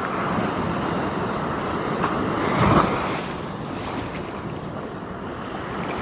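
Ocean surf washing in, with wind buffeting the phone's microphone; the rush swells louder about two and a half seconds in.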